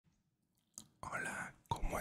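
A man whispering close into a microphone, after a short click just before the first second.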